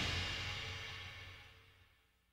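The last chord and cymbals of a rock band's recording ringing out after the final hit. They fade away to silence about a second and a half in.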